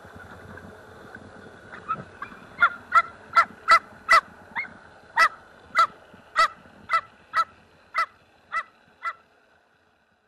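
A series of about sixteen short honking animal calls, two or three a second, starting about two seconds in and fading out near the end, over a faint wash of water and wind.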